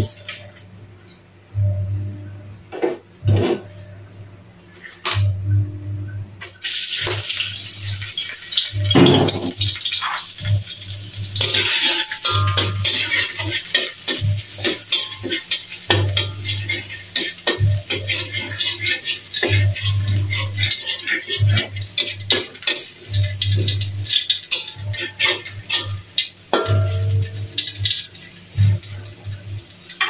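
Chopped garlic sizzling in hot oil in an aluminium wok, stirred with a metal spatula that clinks and scrapes against the pan. The sizzling starts suddenly about six seconds in, after a few quieter knocks.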